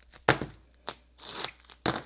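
Small plastic-wrapped packet handled on a cutting mat: two sharp knocks, one about a quarter second in and one near the end, a fainter tap between them, and a brief crinkling rustle of plastic.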